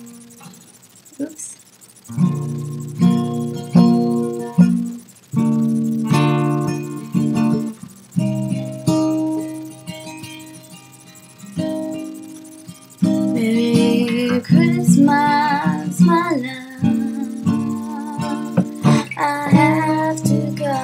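Acoustic guitar playing a song's intro, chords struck in groups with short pauses between them. About thirteen seconds in, a singing voice comes in over the guitar.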